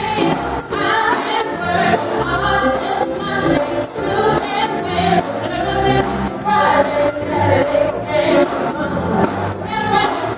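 Gospel choir singing, with a tambourine jingling in a steady rhythm.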